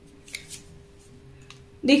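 Tarot cards being handled and laid down on a wooden table: two short, sharp snaps of card stock about a third and half a second in.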